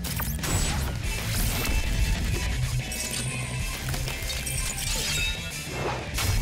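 Cartoon alien-transformation sequence: dramatic music with crystal-like crashing, shattering and clinking sound effects as the boy becomes a crystal alien, and a rising swoosh near the end.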